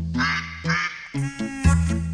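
Duck quacking sound effect over background music with a steady bass line.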